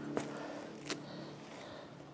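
Two short, faint clicks about 0.7 s apart over a low steady hum.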